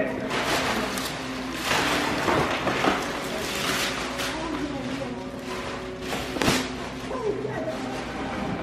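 Wrapping paper being torn and crumpled off a large gift box: continuous paper rustling with sharper rips now and then, one especially sharp about six and a half seconds in.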